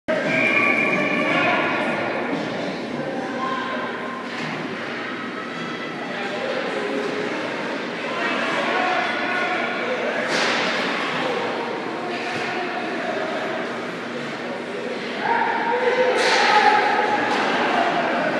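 Spectators' voices in an indoor ice rink: overlapping talk and shouts from the stands, with louder outbursts about ten seconds in and again from about fifteen seconds.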